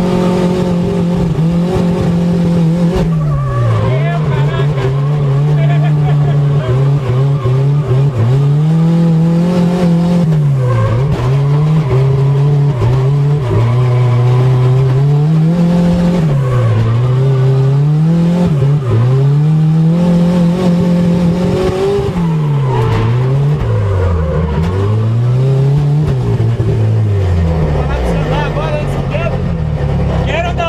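Turbocharged VW AP four-cylinder engine of a Chevette drift car, heard from inside the cabin, revved hard with its pitch climbing and falling again and again as the throttle is worked. Near the end the revs drop to a lower, steadier note.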